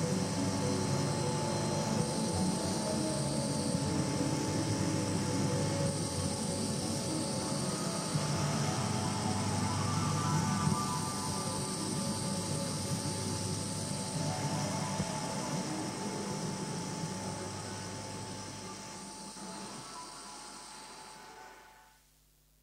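Ambient electronic drone: steady held high tones over a dense low hum, slowly fading out over the last several seconds.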